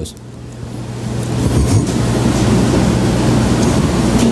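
Steady low rumbling background noise with an electrical hum, swelling up over the first second or so and then holding level.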